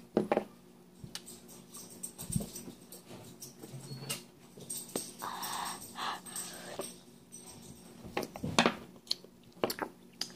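A child breathing out hard through the mouth with the tongue stuck out, reacting to the sting of extreme-sour candy, among faint scattered clicks and rustles.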